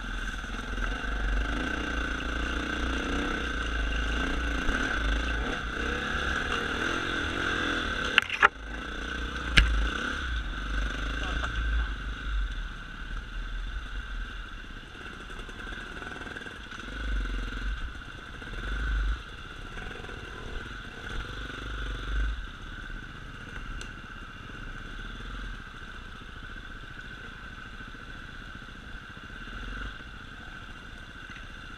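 Enduro motorcycle engine heard from on board, running at low speed with the throttle rising and falling over rough trail. A few sharp knocks come about eight to ten seconds in, and the engine runs quieter through the second half.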